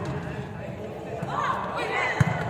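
Players and bench shouting and calling out in a large, echoing sports hall, the voices rising sharply in the second half as a volleyball rally goes on.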